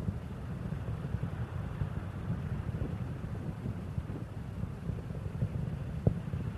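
Steady low rumble of Space Shuttle Endeavour's ascent: its two solid rocket boosters and three main engines burning.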